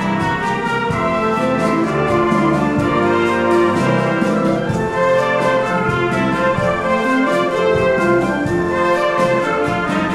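Military concert band playing a beguine: brass, saxophones and clarinets in sustained lines over a steady percussion beat.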